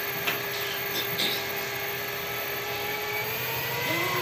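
Tour boat's motor running with a steady hum, holding an even pitch, with a couple of faint clicks in the first second or so.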